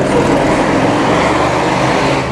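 A steady rushing noise, louder than the surrounding speech, with a voice faintly beneath it.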